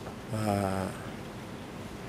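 A man's voice making one drawn-out, steady-pitched hesitation sound, a held "uhh" of about half a second, before he starts answering.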